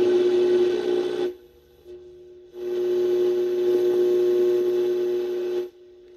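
Magnavox handheld radio tuned across the AM band, played through a record player's speaker: static with a steady whine. It cuts out about a second in, comes back loud about two and a half seconds in, and drops away again near the end as the dial turns.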